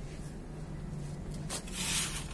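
A hand rubbing and crumbling dry, powdery dirt and cement in a metal basin: a soft gritty rasp that swells to its loudest from about one and a half seconds in.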